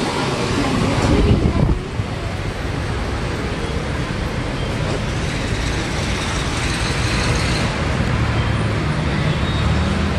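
Street traffic noise: a steady din of road vehicles. It is louder and rushing for the first couple of seconds, and a low engine hum from a vehicle comes in over the last few seconds.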